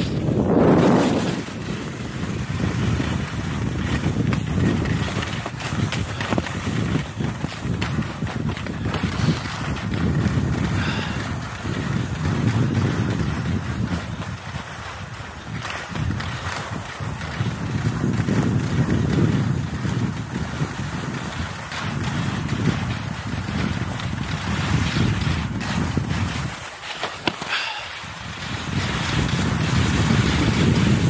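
Wind buffeting the microphone of a camera carried by a skier going downhill, swelling and fading in gusts, with skis scraping over hard, wind-crusted snow.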